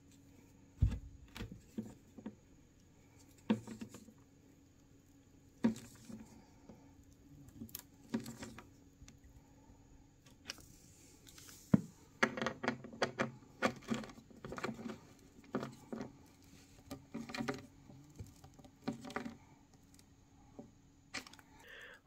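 A hand screwdriver turns metal cam lock fittings in the bookcase's particleboard panels, tightening each cam about three-quarters of a turn to lock it onto its dowel. There are scattered light clicks and knocks, then a denser run of small clicks a little past halfway.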